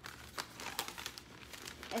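A sheet of butcher paper rustling and crinkling as it is handled and spread over a tote bag, a run of irregular sharp crackles.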